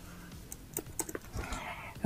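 A few faint, irregularly spaced keystrokes on a computer keyboard, most of them about half a second to a second in.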